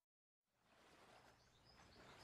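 Near silence: dead silence in a gap between background music tracks, then a faint, even hiss fades in about half a second in and slowly grows.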